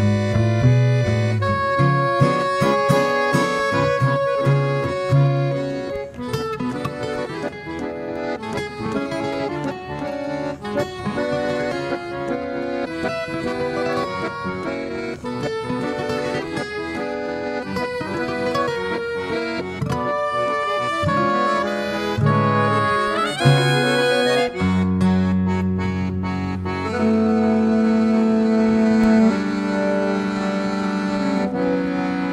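Live tango played by a trio of button accordion, soprano saxophone and guitar, with long held notes over a busy accompaniment. A quick rising run comes about three-quarters of the way through, and the piece then settles on low held chords.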